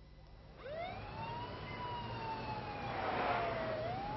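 A siren wailing: its pitch climbs quickly about half a second in, sinks slowly over the next two seconds, then begins to climb again near the end.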